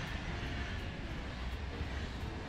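SBB passenger train passing along the station platform: a steady rumble of wheels running on the rails.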